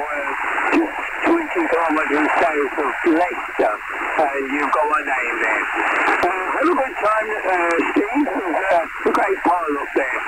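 Single-sideband voice transmission on the 40 m amateur band, received on a Xiegu X6200 transceiver and heard through its speaker: German-language speech squeezed into a narrow, thin-sounding band over steady hiss, with laughter near the end.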